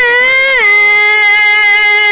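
A man singing a long, held "aah" in a high voice, Bhojpuri folk style. The pitch wavers and slides down a little about half a second in, then holds steady.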